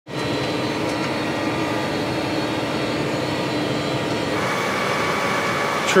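Farm machine's engine running steadily, heard from inside its cab as an even drone with a faint hum.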